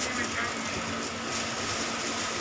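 Steady background hiss with a faint constant hum underneath: room noise, with no distinct sound standing out.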